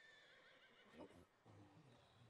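Near silence, with only faint sounds from the anime playing quietly underneath.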